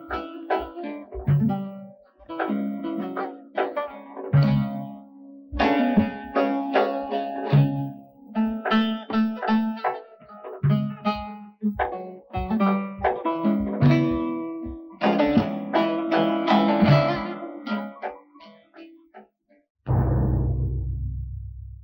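Background film music: a plucked guitar playing quick picked notes over a lower bass line, breaking off near the end.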